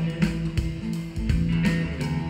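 A live rock band playing an instrumental passage: electric guitars over bass and drums, with several drum hits during it.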